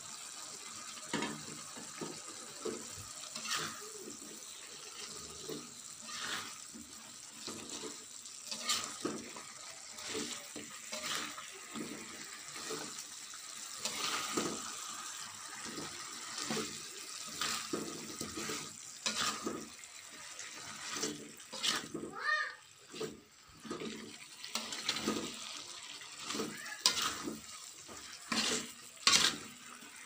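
A spatula stirring chicken feet through a wok of boiling chili spice sauce: irregular scrapes and knocks of the spatula against the pan over the wet bubbling and sloshing of the sauce.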